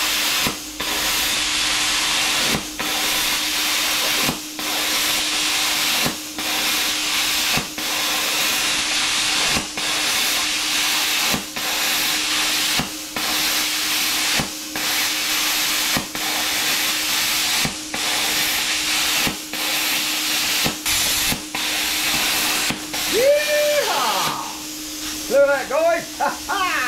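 Bestarc BTC500DP plasma cutter cutting rusty expanded steel mesh: a loud, steady hiss of arc and air with a hum underneath. The hiss dips briefly about every second and a half. With the pilot arc set to stay lit, the arc keeps re-igniting across the gaps in the mesh instead of going out. The hiss drops away near the end.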